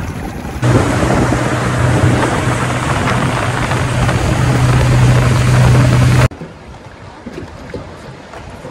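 Outboard motor of an inflatable powerboat running steadily at speed, a low, even engine hum under the loud rush of wind and water. It starts abruptly about half a second in and cuts off suddenly near the end, leaving quieter water sounds.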